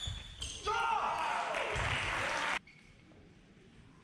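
A table tennis ball clicks on bat and table right at the start. About half a second in, a shout and cheering break out for about two seconds, then cut off suddenly, leaving the faint hum of a large sports hall.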